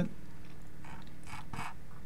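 Three faint computer keyboard and mouse clicks between about one and two seconds in, over a steady low hum.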